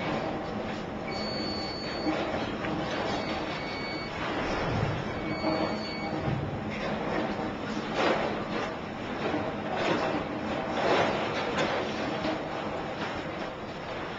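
Bridge of a cruise ship in a heavy storm sea: a steady rushing, rattling noise, with a thin high electronic beep sounding three times in the first six seconds and several louder surges of rushing in the second half.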